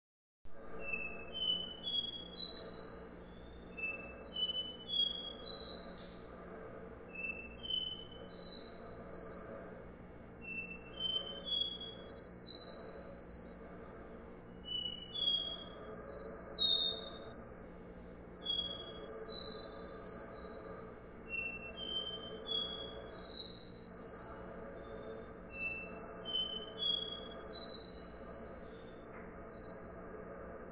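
Capped seedeater (caboclinho, Sporophila bouvreuil) singing its 'dó ré mi' song. Its clear whistled notes step upward in pitch in runs of three or four, and the run is repeated every second or two.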